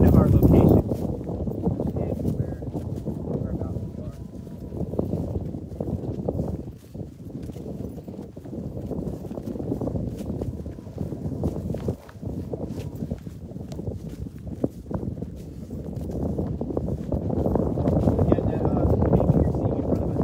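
Footsteps walking across a dry, stubbly field, under a low, rising-and-falling rumble of wind on the microphone.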